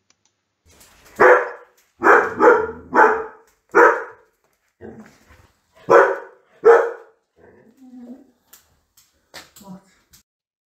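Standard poodle barking at a postman: about seven loud, sharp barks, one about a second in, then a quick run of four, then two more, with fainter sounds after.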